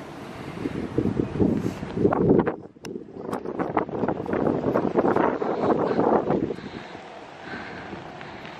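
Wind buffeting the camera's microphone in uneven gusts. There is a brief lull about two and a half seconds in, and the gusts ease off near the end.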